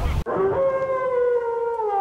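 Outdoor pitch-side sound cuts off a quarter second in. A single held tone follows, sliding slowly down in pitch for about a second and a half, as the lead-in to the outro music.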